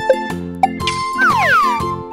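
Light, cheerful plucked-string background music, with a cartoon sound effect laid over it about halfway through: a sparkly tinkle followed by a quick falling slide in pitch.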